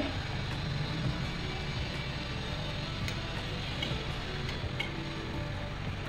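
Soft background music over the faint sizzle of khasta samosas deep-frying slowly in oil in a steel kadhai on low heat. A few light clinks come from a perforated steel skimmer turning them, about halfway through.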